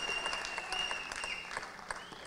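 Audience applauding, with a steady high tone sounding over the claps until about a second and a half in; the applause thins out toward the end.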